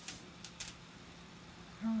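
A few brief light clicks from small items being handled on a work table, in the first second, over the low steady hum of a small electric fan. The word "All right" is spoken near the end.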